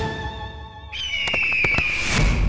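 Dramatic background score: a held note fades away, then about halfway through a new high tone enters and slides slowly down, with a quick run of sharp percussive hits.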